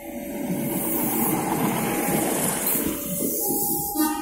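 Airport rail-link passenger train passing close by: a loud, steady rush of wheels on rails and running gear that builds over the first second.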